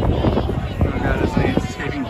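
Voices: speech and crowd chatter close by, over a low rumble.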